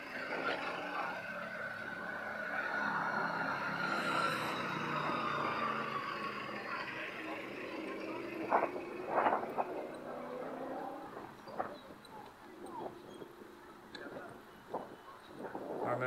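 Outdoor harbourside ambience with the voices of passers-by. A vehicle passes in the first half, its tone slowly falling as it swells and fades, followed by a few short, sharp sounds about halfway through.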